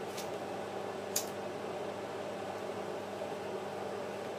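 Steady low mechanical hum, with one faint click about a second in.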